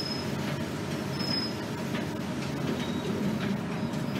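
Steady low running rumble inside an MBTA city bus on the move. Brief high squeaks come at the start and again about a second in.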